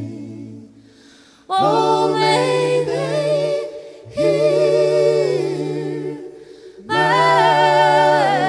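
A group of voices singing a cappella in close gospel harmony, with a bass voice holding a low note under each phrase. After a brief pause, a phrase comes in about a second and a half in, another at about four seconds and a third near seven seconds, each with a short breath between.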